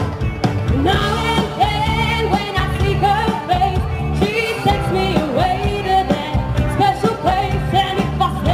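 A live rock band playing loudly through a PA: a singer's melody over electric guitars and bass guitar, the voice coming in about a second in.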